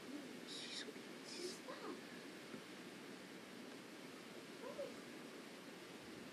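Steady hiss of old VHS camcorder audio with faint whispering and murmured voices, a few soft sibilant sounds in the first two seconds and brief low syllables later.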